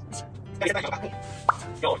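Background music with a short, rising cartoon-style 'bloop' sound effect about one and a half seconds in, between brief bits of talk.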